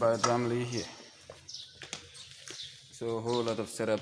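A man's voice making drawn-out sounds without clear words, in two stretches: at the start and again from about three seconds in. A few faint, short, high chirps sit in the quieter stretch between.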